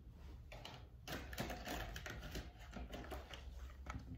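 Light, irregular clicking and crackling of a clear plastic clamshell container of muffins being handled, starting about a second in.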